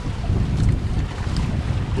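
Wind buffeting the microphone in the open cockpit of a small sailing trimaran at sea: a low, uneven rumble with faint sea noise.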